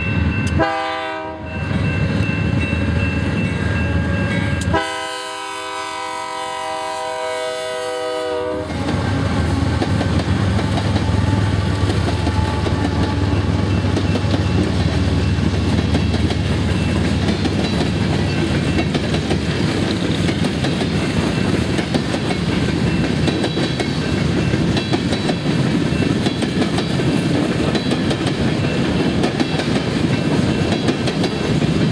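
Diesel freight locomotive horn: a short blast about a second in, then a long blast of about four seconds. After it, the steady rumble and clatter of coal hopper cars rolling past on the rails.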